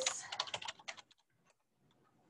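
Computer keyboard typing: a quick run of keystrokes that stops about a second in.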